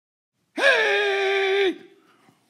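A single high-pitched, voice-like cry, held for about a second: it drops quickly in pitch at the start, stays on one note, then cuts off sharply.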